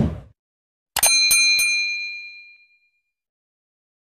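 A low thud right at the start. About a second in, a bell-like metallic ding struck three times in quick succession, leaving high ringing tones that fade away over about a second and a half.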